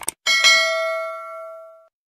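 Two quick click sound effects, then a notification-bell chime struck twice in quick succession that rings out for about a second and a half. This is the bell ding of a subscribe-button animation as the cursor clicks the bell icon.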